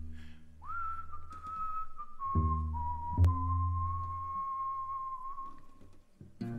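A man whistling a slow melody of long held notes over strummed acoustic guitar chords, scooping up into a note about a second in. A fresh chord comes in a little past two seconds, and both die away near the end.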